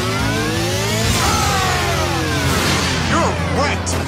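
Motorcycle engine sound effect revving up for about a second, then dropping away in pitch, over a steady music bed. Near the end a shouted attack call, 'Blast!'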